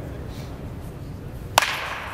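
Baseball bat hitting a pitched ball once, a sharp crack near the end with a brief ring after it.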